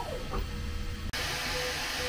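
Bambu Lab P1P 3D printer running: a low hum and a motor tone that rises and falls as the toolhead moves over the calibration lines. About a second in, the sound cuts to a steadier, hissier rush of fans and motors as the printer runs a print at Sport speed.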